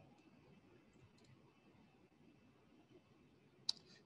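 Near silence: faint room tone, with one sharp click near the end.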